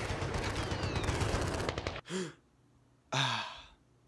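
A loud, rapid rattling clatter that cuts off suddenly about two seconds in, then a man's short voiced grunt and a long waking sigh.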